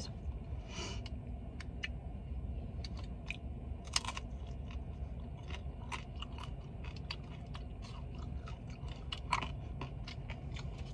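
Close-up chewing of a crunchy deep-fried taco: a run of small, irregular crisp crunches and mouth clicks, with one louder crunch about four seconds in.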